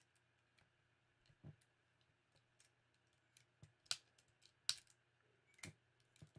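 Near silence: faint room tone with a few sparse, short computer clicks, the sharpest about four and five seconds in.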